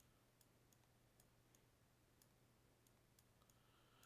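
Near silence: faint room tone with a steady low hum and about ten faint, irregular clicks from the computer input being used to write the answer on screen.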